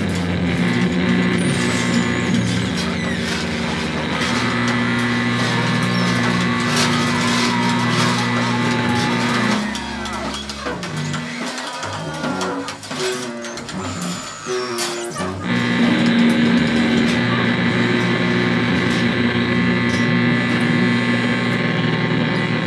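Live band playing dense, droning improvised music on amplified electric guitar, bass guitar and other instruments. The sound thins to a sparser, quieter passage just before the middle and swells back to the full drone about two-thirds of the way through.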